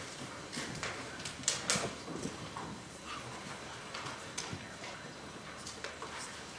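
Room noise with scattered clicks, knocks and rustling; the sharpest, a pair of clicks, comes about a second and a half in.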